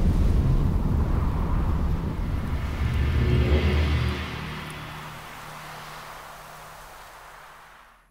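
Closing logo sound design: a heavy low rumble, like a passing aircraft, that drops away about four seconds in, leaving a faint low hum that fades out at the end.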